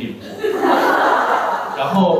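An audience laughing together, swelling about half a second in and dying away near the end.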